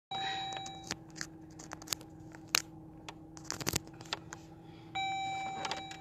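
A phone being handled close up, with scattered clicks, knocks and rubbing against a surface over a steady low hum. Two short electronic tones sound, one at the very start and one about five seconds in.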